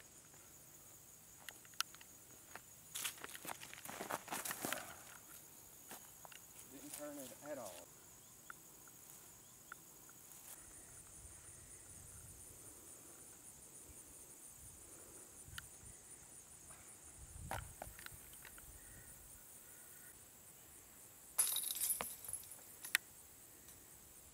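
Steady high-pitched insect chirring outdoors, with scattered footsteps and rustling on grass in the first few seconds. A short, loud noisy burst comes near the end.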